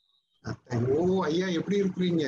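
A man's voice calling "hello" over a video-call connection, starting after about half a second of silence.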